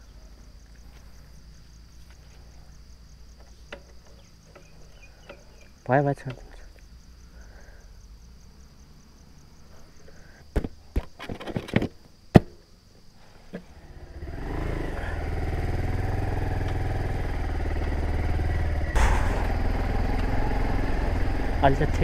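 Sharp plastic clicks and knocks as a motorcycle seat is pressed back into place over the battery compartment, then, from a little past the middle, the motorcycle's engine running steadily as it rides along a rough dirt track.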